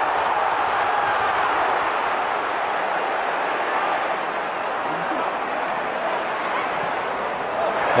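Steady noise of a large football stadium crowd: thousands of voices in the stands blending into an even hubbub, with faint shouts standing out here and there.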